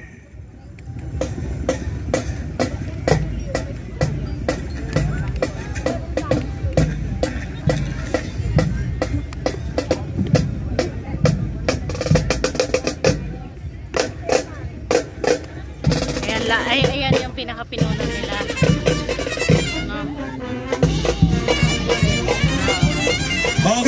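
Marching band drum section playing a fast, even cadence on snare and bass drums. Other pitched band instruments join about 16 seconds in.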